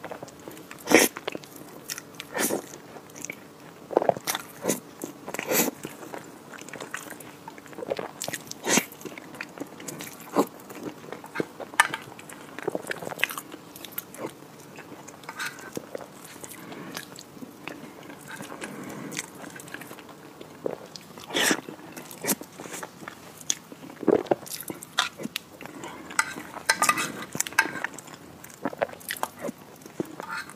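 Close-miked eating sounds: a woman spooning up and chewing a creamy green dessert topped with crumbled chocolate cookie, with irregular crunches and chewing noises about every second.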